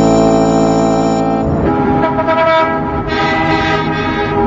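A vehicle horn sounds steadily for about a second and a half, then gives way to busy street traffic noise.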